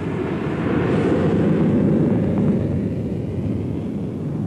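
Messerschmitt Me 262's Junkers Jumo 004 turbojet running up with a loud rushing roar that swells about a second in and eases a little toward the end.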